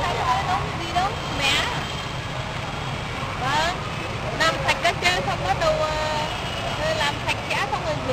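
Indistinct background voices of people talking, too faint to make out, over a steady low outdoor rumble.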